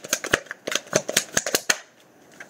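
Tarot cards being shuffled by hand: a quick, irregular run of about a dozen sharp card clicks that stops just before the end.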